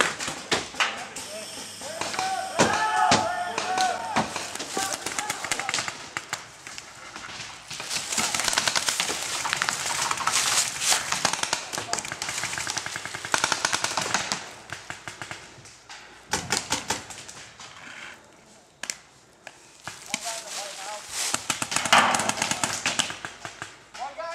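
Paintball markers firing in rapid strings of shots, thickest through the middle of the stretch, with players shouting now and then.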